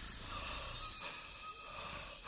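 Quiet fantasy-forest ambience: a steady high hiss with faint short chirps recurring about every half second.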